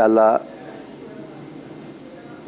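A man's voice finishes a word, then gives way to steady room noise. A faint, thin, high-pitched whine sounds for about a second.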